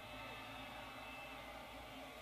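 Very quiet room tone: a faint, steady low hum and hiss with no distinct event.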